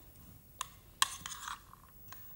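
A metal spoon mixing a salad of boiled baby potatoes and pomegranate seeds in a container: a light click, then a sharper click about a second in followed by a short scrape of the spoon against the side.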